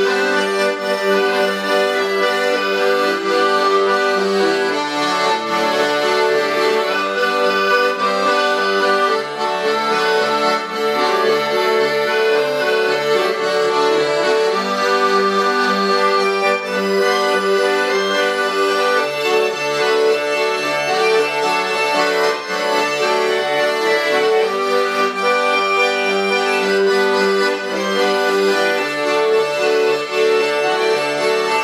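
A button accordion (melodeon) and a piano accordion playing a tune together in a duet: held, reedy melody notes over a steady, repeating bass-and-chord accompaniment.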